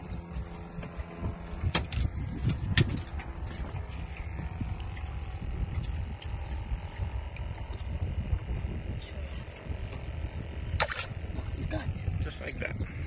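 Wind buffeting a phone microphone on open water, a steady low rumble. A few sharp handling clicks come in the first three seconds and another about eleven seconds in.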